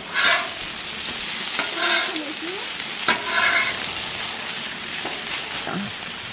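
Shrimp and frozen mixed vegetables sizzling steadily on a hot Blackstone flat-top griddle, with a few light clicks.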